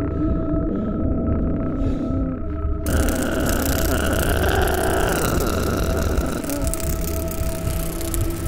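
Dark ambient horror score: low rumbling drones under held eerie tones, joined about three seconds in by a sudden, sustained wash of hissing noise.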